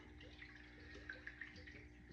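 Near silence: room tone with a faint steady hum and a few faint small handling ticks.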